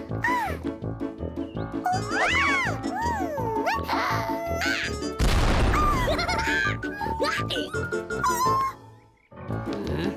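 Bouncy cartoon background music with the bunnies' high, squeaky wordless vocal chirps gliding up and down. Just after five seconds in comes the loudest sound: a pop with a hissing burst as a party popper fires confetti.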